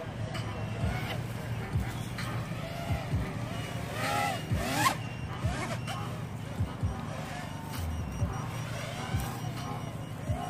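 Small racing quadcopters flying, their motors whining, with the pitch rising and falling as the throttle changes. Wind buffets the microphone with short low thumps.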